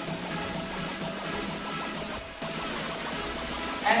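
Background music playing steadily, with a brief dip about two seconds in.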